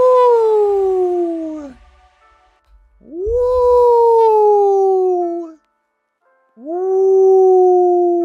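A man's voice sings three long wordless notes close into the microphone, with short pauses between them. Each note swoops up quickly and then slides slowly down in pitch.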